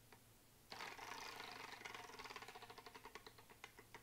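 Wooden prize wheel spinning, its pointer flicking over the wooden pegs round the rim. A fast run of clicks starts about a second in, then slows and spreads out into single clicks as the wheel comes to rest.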